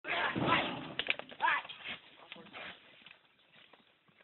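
Metal bucking chute rattling as a bull is let out, with people shouting, a sharp knock about a second in, then fading after about two seconds.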